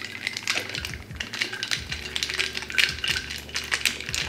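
A long spoon stirring an iced drink in a glass jar: quick, irregular clinks of the spoon and ice cubes against the glass.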